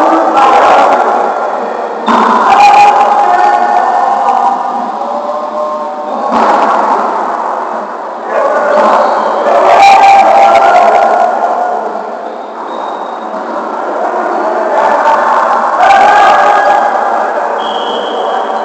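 Players' voices shouting and calling out across an echoing gymnasium, with a few sharp knocks scattered through.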